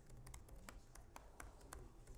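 Faint typing on a computer keyboard: a dozen or so quick keystroke clicks at an uneven pace.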